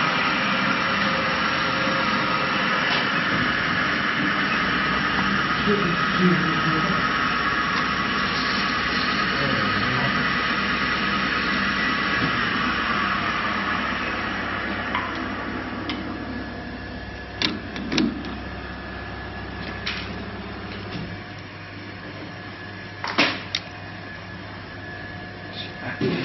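A steady mechanical hum made of many level tones, which gradually fades through the second half as if running down, with a few sharp clicks near the end.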